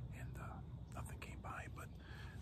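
A man speaking in a low whisper.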